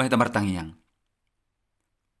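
A man speaking the last words of a sentence in Batak Toba, then dead silence for the last second or so.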